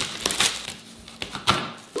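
Large kitchen knife chopping frozen chocolate bark on a cutting board through parchment paper: a few crunching knocks, the loudest about one and a half seconds in.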